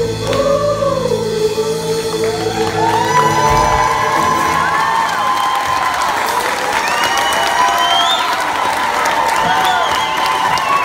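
Choir holding a final sung chord over banjo, mandolin and guitar accompaniment, which ends about three seconds in; a crowd then cheers, whoops and applauds, with a rising whistle near the end.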